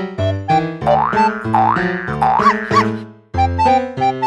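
Playful background music with short, bouncing keyboard notes. From about a second in, a sliding pitch effect swoops up and down several times over the notes, then the music drops out for a moment just before the end and resumes.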